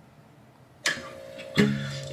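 Acoustic guitar strummed after a short quiet: a first strum a little under a second in, then a louder chord at about a second and a half, its low strings ringing on.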